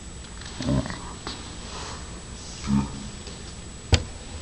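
Two brief low vocal sounds, then a single sharp knock near the end as the black-light bulb and its lamp are set down on the countertop.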